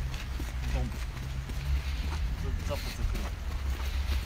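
Footsteps of people walking on a dirt path over a steady low rumble on a handheld phone's microphone, with brief indistinct voices.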